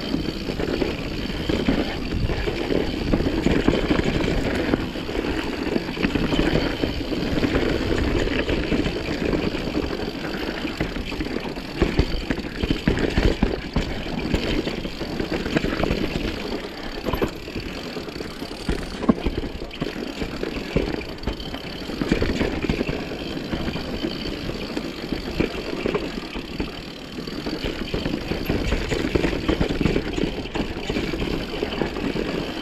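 Mountain bike riding fast down a dirt singletrack: a steady rumble of tyres on the trail, with frequent short knocks and rattles as the bike goes over rough ground.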